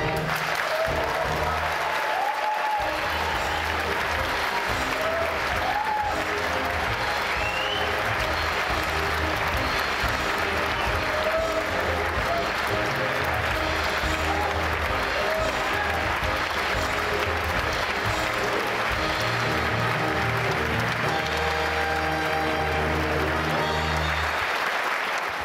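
Theatre audience applauding and cheering steadily, with scattered shouts and whoops, while the orchestra plays on underneath.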